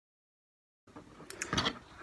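Dead silence for about the first second, then faint rustling with a few sharp clicks as the sewn fabric pieces are handled and lifted out from under the sewing machine's presser foot.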